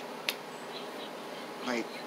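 A sharp click from handling a plastic-sealed eyeshadow palette, over a steady buzzing room hum.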